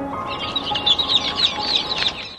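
Many overlapping bird chirps, growing louder about half a second in, over background music with held tones.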